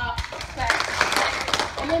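A group of people clapping and slapping high fives with partners, a scatter of sharp hand claps through most of the stretch, with voices talking over it.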